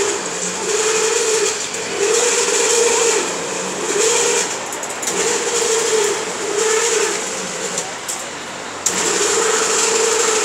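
Pivot of a swing-boat amusement ride squeaking as the gondola swings, in repeated drawn-out squeaks roughly once a second; the ride is described as faulty.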